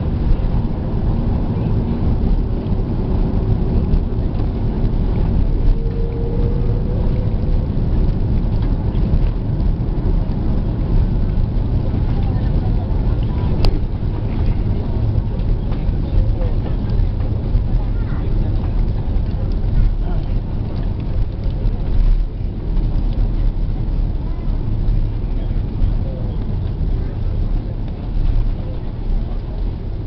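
Cabin noise of an Airbus A330-300 on its landing rollout, with spoilers deployed: a loud, steady low rumble from the engines and the wheels on the runway, easing slightly near the end.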